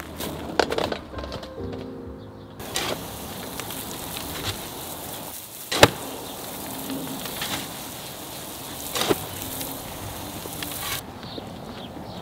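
Background music: sustained chords for the first couple of seconds, then a busier, noisier passage with sharp percussive hits, the loudest about halfway through.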